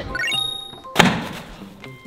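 A phone tossed into a nearly empty trash can lands with one loud thunk about a second in. Just before it, a quick rising run of notes plays over background music.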